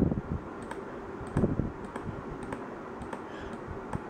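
Scattered light clicks from working a laptop's pointer controls, with two low thumps, one at the start and one about a second and a half in.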